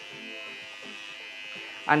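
Cordless electric hair trimmer running with a steady buzz and a constant high whine as it is guided along the edge of a plastic mold on the scalp, cutting a guide line into the hair.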